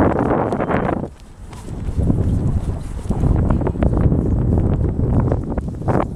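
Wind buffeting the microphone: a loud rush in the first second, a brief drop, then a steady low rumble.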